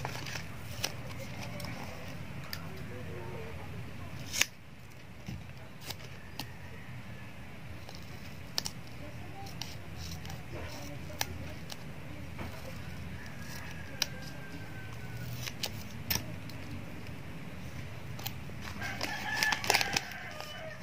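Quiet craft handling: scattered sharp clicks and snips of scissors cutting double-sided adhesive tape and of ribbon and plastic being handled, the loudest click about four and a half seconds in, over a steady low hum. A drawn-out pitched call comes up in the background near the end.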